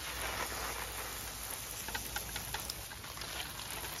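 Hand pressure sprayer misting seedling trays: a steady hiss of fine spray landing on leaves and compost, with a few faint ticks about halfway through.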